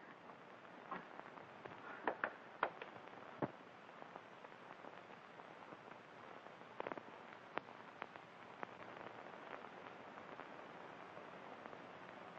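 Faint steady hiss with scattered sharp clicks and pops, a few seconds apart at most: the surface noise of a 1930s film soundtrack during a stretch without dialogue.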